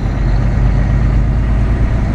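Cummins ISX diesel engine of a Volvo 780 semi-truck running with a steady low drone, heard inside the cab as the truck rolls slowly.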